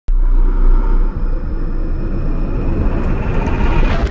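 Cinematic logo-intro sound effect: a deep rumble that starts suddenly and swells toward the end, building up to the channel logo's reveal.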